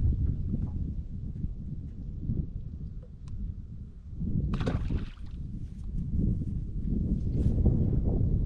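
Wind rumbling on the microphone and water lapping around an aluminium-and-fibreglass bass boat, with a short noisy burst a little past halfway through.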